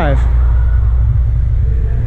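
Loud, steady low rumble of air buffeting the microphone of a handheld action camera as it is carried around the boat.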